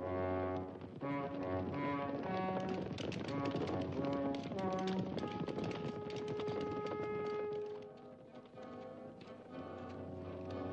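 Orchestral film score led by brass, with galloping hoofbeats of a troop of horses clattering under it through the middle. Near the end the music settles on long held notes and then grows quieter.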